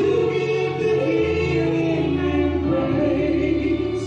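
A woman and a man singing together into microphones in long held notes, over a low steady accompaniment.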